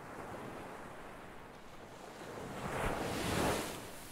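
Ocean surf: a steady wash of water noise that swells into a louder wave about three seconds in, then eases off.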